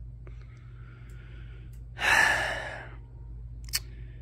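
A man's long sigh about two seconds in, a breathy exhale that fades over about a second. It follows a fainter breath, over a low steady hum, with a single short click near the end.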